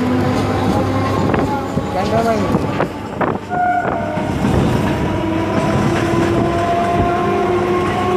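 Electric suburban local train running along the track, heard from on board: a steady rumble of wheels on rails with a steady whine over it.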